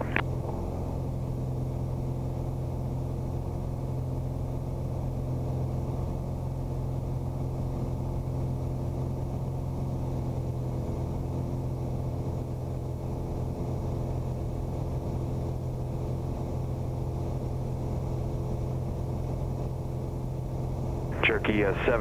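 A Piper Arrow II's four-cylinder Lycoming IO-360 engine and propeller in steady cruise, giving an even drone that does not change. A radio voice cuts in near the end.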